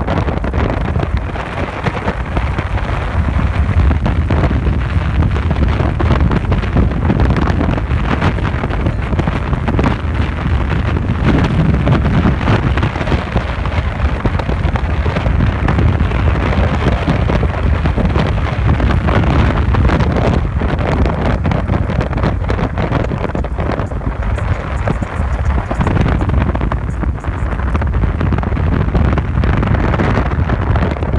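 Wind buffeting the microphone of a phone held up on a tandem bicycle freewheeling fast downhill, a loud, steady rush mixed with tyre noise on tarmac.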